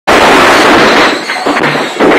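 Strings of firecrackers going off in a loud, dense, rapid crackle of countless pops, easing slightly after about a second.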